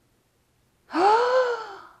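A woman's gasp of delight, starting about a second in: one breathy intake, about a second long, whose pitch rises and then falls.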